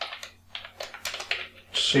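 Computer keyboard being typed on: a quick run of separate keystroke clicks as a line of code is entered.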